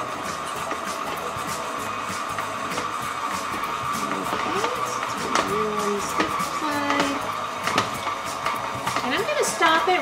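KitchenAid stand mixer running steadily at low speed, its motor giving an even mid-pitched whine, as it mixes powdered sugar, meringue powder and water into royal icing.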